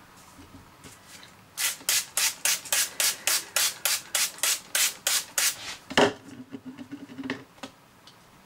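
Hand trigger spray bottle squirting water onto paper kitchen towel in a quick run of about fifteen spritzes, some four a second, starting about a second and a half in. A sharp knock follows about six seconds in, then quieter handling noise.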